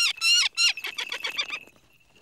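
Peregrine falcon calling: a few loud, harsh screams that fall in pitch, then a fast chatter of short notes that fades away about a second and a half in.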